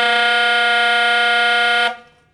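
Tenor saxophone holding one steady, loud note on the F-with-side-C fingering: a multiphonic with the altissimo G sounding in it, running sharp. It cuts off just before the end.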